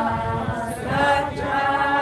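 A group of people singing a hymn together, slow and unhurried with long held notes.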